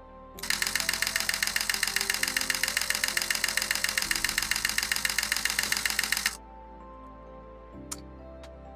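Canon EOS R shutter firing a high-speed continuous burst, about eight even clicks a second for some six seconds, stopping suddenly when the release is let go.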